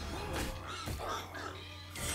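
Cartoon hog giving a few short, harsh squeals as it is wrestled, over background music.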